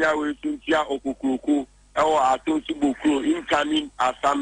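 Speech only: a person talking rapidly and without pause.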